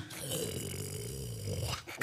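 A man's drawn-out, low, wordless vocal sound held at a steady pitch for nearly two seconds, picked up by a handheld microphone.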